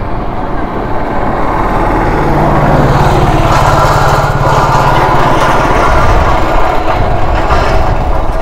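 A motor vehicle engine running close by, growing louder over the first couple of seconds and holding a steady hum through the middle before easing off.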